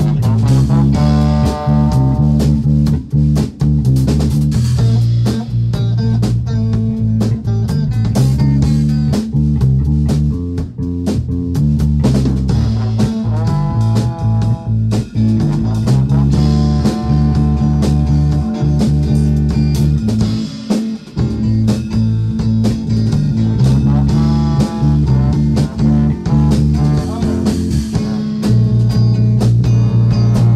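Live band playing an instrumental jam: drum kit, electric guitar and trombone over a heavy bass line, loud throughout. The low end drops out briefly a little past the middle.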